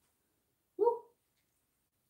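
A single short dog bark about a second in.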